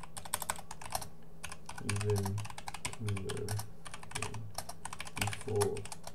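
Rapid typing on a computer keyboard: a steady run of keystroke clicks.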